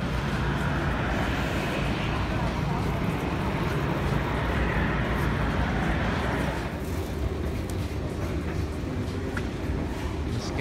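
Steady roar of aircraft and apron noise beside a parked airliner, easing a little about two-thirds of the way through.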